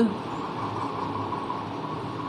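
Steady background noise: an even hiss with a faint constant hum running underneath.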